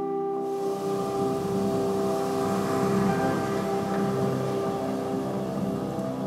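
A jazz orchestra holds a sustained chord, and about half a second in audience applause breaks out over it.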